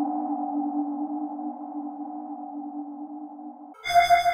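Krakli S3 software string-machine synthesizer holding a sustained chord that slowly fades. The chord cuts off just before the end, and a brighter new patch with many high tones begins.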